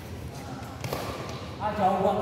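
Badminton rally: a racket strikes the shuttlecock with a sharp crack about a second in, among lighter knocks of play. A player's voice calls out near the end.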